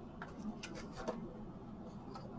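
Faint crackles and clicks of thin plastic stencil sheets being lifted and moved on a stack, a few of them within the first second.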